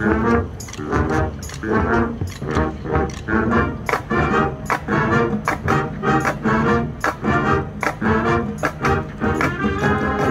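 Marching band playing: brass section with sousaphones sounding short punchy chords, with drum hits in a steady rhythm. The chopped chords give way to a held chord just before the end.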